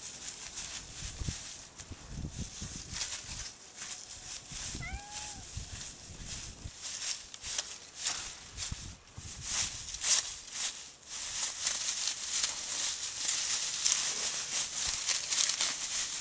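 Dry, dead oat cover-crop straw rustling and crackling as it is pulled up by hand and shaken off its roots, the crackle growing denser in the second half. A single short pitched call comes about five seconds in.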